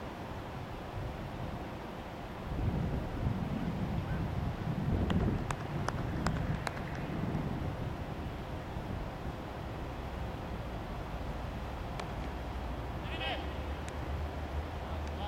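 Open-air ambience with faint distant voices. A low rumble swells a few seconds in and fades by the middle, with a handful of sharp clicks around the middle.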